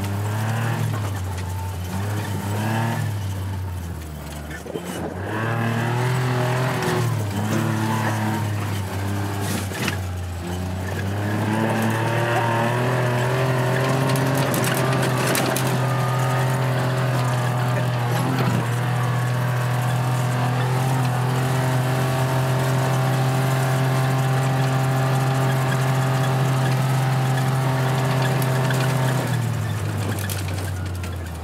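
John Deere Gator utility vehicle's engine running under way, its pitch rising and falling with the throttle for the first ten seconds or so. It then holds one steady pitch at constant speed and drops off just before the end.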